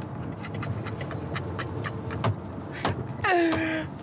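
Steady low road and drivetrain rumble inside the cabin of a moving Bentley Bentayga, with a man laughing quietly over it and a short drawn-out voiced sound, falling then held, near the end.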